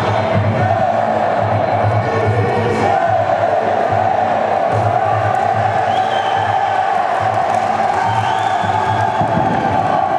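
Spectators cheering and shouting over music with a steady low beat.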